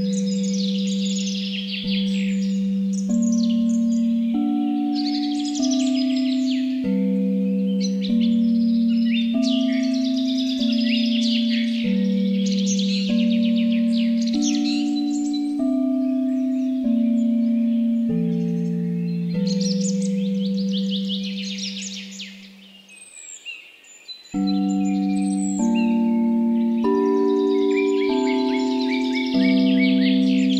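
Tibetan singing bowls struck one after another at a few different pitches, each tone ringing on under the next, layered over birdsong with bursts of chirping. The ringing fades almost away about 22 seconds in, and new strikes start again about two seconds later.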